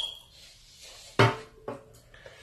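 A drinking cup knocked down onto a hard tabletop: one loud clunk a little over a second in, then a smaller knock soon after.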